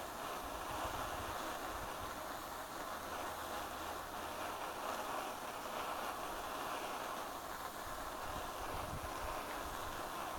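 Borde self-pressurized petrol stove burning at full flame on unleaded petrol: a steady, quite noisy rushing from the burner.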